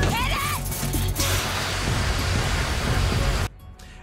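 CO2 fire extinguisher discharging in a long, steady hiss over dramatic background music, with a brief shout just before; the sound cuts off suddenly near the end.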